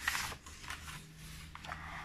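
A paper page of a picture book being turned by hand: a short rustle at the start, then softer sliding and handling of the paper.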